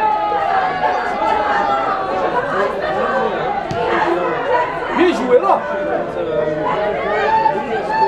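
Several voices of people at a football match talking and calling out over one another, with a louder shout or two about five seconds in.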